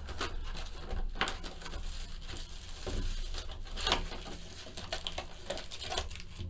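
Plastic shrink-wrap crinkling and tearing as a sealed trading-card box is unwrapped and its cardboard lid opened: a run of irregular crackles and small clicks.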